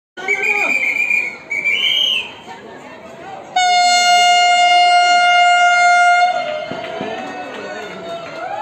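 Horn of an approaching Vande Bharat Express train: one long, steady blast of nearly three seconds that starts abruptly about three and a half seconds in. Before it come high shouts or whistles from people on the platforms, and crowd voices follow as it fades.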